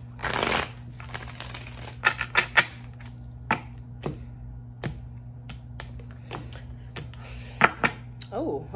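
A deck of tarot cards being shuffled by hand: a short burst of shuffling about half a second in, then scattered light clicks and taps of the cards being handled and set on the table.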